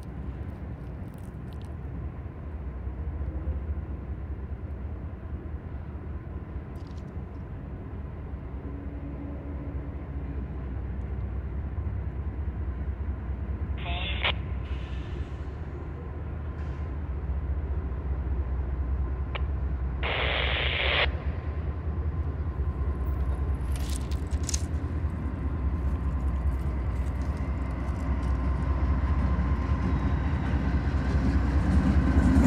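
Norfolk Southern freight train led by GE C40-9W diesel locomotives approaching, a low locomotive rumble that grows steadily louder as it nears. Two brief higher-pitched sounds cut through partway, the second lasting about a second.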